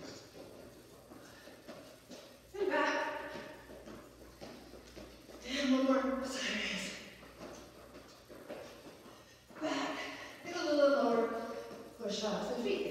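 A woman's voice in three short bursts of speech with pauses between them.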